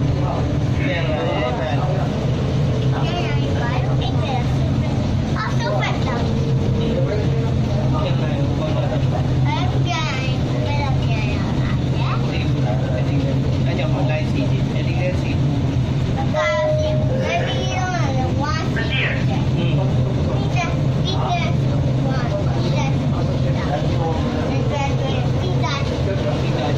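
Steady low hum and rumble of a light-rail train running along its guideway, heard inside the passenger cabin, with passengers' voices talking throughout.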